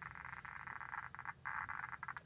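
Geiger counter clicking very fast, so fast that the clicks run together into a dense, faint crackle, with its probe held close to americium-241 smoke-detector sources at a count rate that overwhelms the meter's most sensitive range. The crackle briefly breaks off about a second and a third in.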